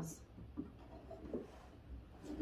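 Faint, light rubbing and rustling as a small picture frame is pressed against a wall and adjusted by hand, over a low steady room hum.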